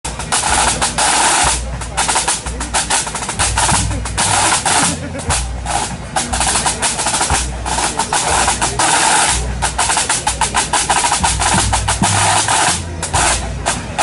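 Pipe band drum corps playing: snare drums in rapid rolls and fast strokes, with tenor drums and a bass drum beating underneath.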